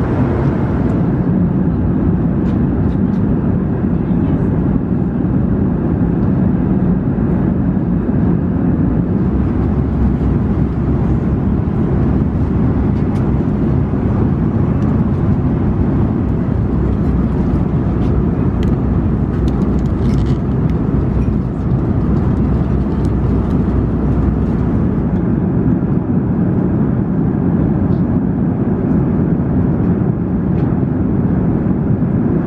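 Steady, low-pitched cabin noise of an Airbus A340-300 airliner in cruise: the unbroken hum of airflow and engines inside the passenger cabin.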